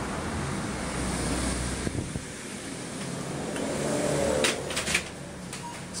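Steady low street and wind rumble that eases about two seconds in as the doorway is passed, with a few sharp clatters near the end.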